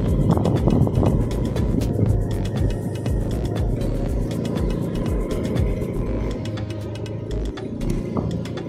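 Engine and road noise of a vehicle moving along the road, a steady low rumble with many small crackles and rattles, under background music.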